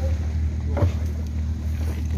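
A steady, low engine hum running evenly, with a brief voice heard a little under a second in.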